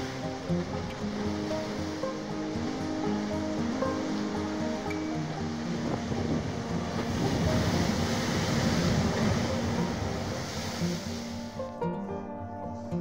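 Ocean surf churning and surging into a narrow rocky channel, with instrumental music laid over it; the surge swells louder about seven seconds in and dies away near the end, leaving only the music.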